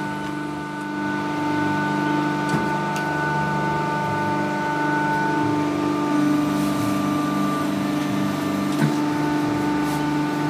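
Hydraulic paper plate making machine running with a steady hum of several held tones, with two short knocks, one about two and a half seconds in and one near the end.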